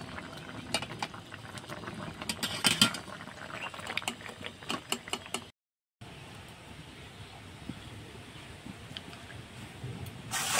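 A metal spatula clicking and scraping against an aluminium kadai while kofta curry is stirred: a run of sharp, irregular clicks. After a short break the clicks stop and a faint, steady hiss of simmering curry is left.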